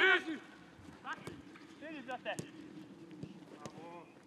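Footballs being kicked: a few sharp thuds, the loudest about two and a half seconds in, among players' distant shouts and footfalls, with a man's shout cutting off right at the start.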